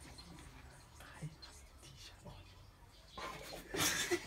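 Faint whispered speech, a person whispering a phrase for another to lip-read, growing louder in the last second.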